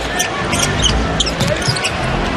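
A basketball being dribbled on a hardwood court, with sneakers squeaking and the murmur of an arena crowd.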